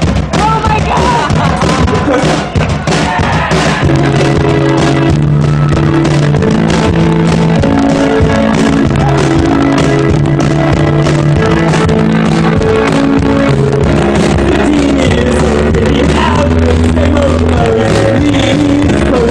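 Live keyboard-and-drums duo playing a song loudly: keyboard chords and a bass line over a steady drum beat, with crowd noise.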